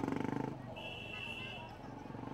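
A live song with its accompaniment ends about half a second in. Low crowd chatter follows, with a brief steady high tone lasting about a second.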